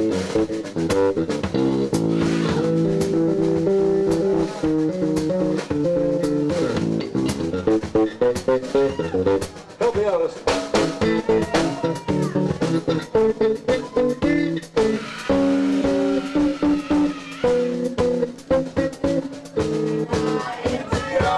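A live rock band playing: electric guitar, electric bass and a drum kit, with a steady beat.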